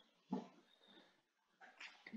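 Near silence on a video call, broken once by a brief, faint sound about a third of a second in.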